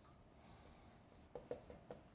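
Dry-erase marker writing on a whiteboard: faint short strokes, with a cluster of about four in the second half.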